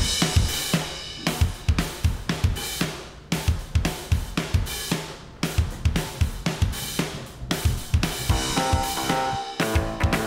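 Background music led by a full drum kit playing a steady beat of kick, snare and cymbals, opening on a sudden loud hit. Pitched instrument notes join near the end.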